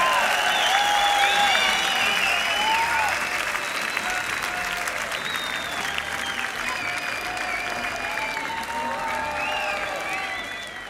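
Large crowd applauding and cheering after a song ends, voices calling out over the clapping. It dies down gradually.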